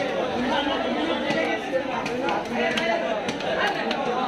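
Several voices chattering, with a few sharp, irregular knocks of a knife blade striking a wooden chopping block as fish is cut.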